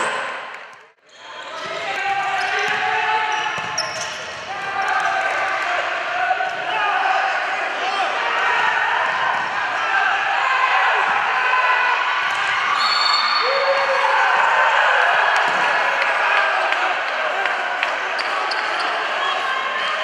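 Indoor futsal match: many voices calling and shouting from the crowd and players, over the thuds and bounces of the ball on the hardwood court, echoing in a large hall. The sound drops out sharply about a second in, then returns.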